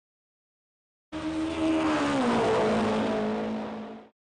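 A car engine sound, starting suddenly about a second in, over a hiss of noise. Its pitch drops once and then holds steady before it fades and cuts off.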